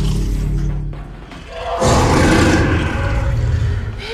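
Film soundtrack of tense score and deep rumbling sound effects. The rumble drops away about a second in, then a sudden loud swell hits and holds.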